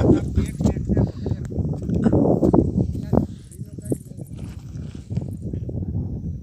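People talking in a field, over a low rumble and irregular knocks.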